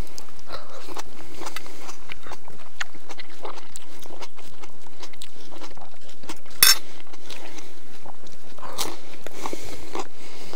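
Close mouth sounds of people chewing fried pollock, soft wet chewing with scattered small clicks, and one sharp click about seven seconds in.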